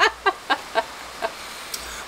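A woman's laughter trailing off in short breathy bursts, about four a second, dying away within the first second; after that only a faint steady hiss.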